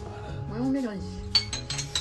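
Several quick glass clinks, a glass olive-oil cruet being set down on the counter, about a second and a half in. Background music plays throughout.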